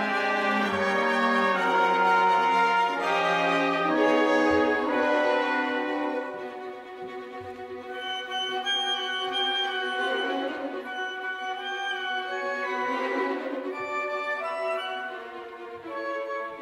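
Symphony orchestra playing a contemporary orchestral piece live: dense, held chords in brass and strings, loud for the first six seconds, then dropping to softer sustained notes in the strings.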